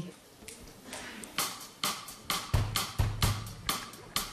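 Drum kit starting a song's intro: a regular run of sharp cymbal and stick strokes, with the bass drum joining about halfway through.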